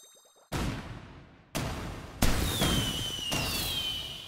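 Firework sound effects: three sudden bursts about a second apart, each fading away, with a falling whistle running through the last one.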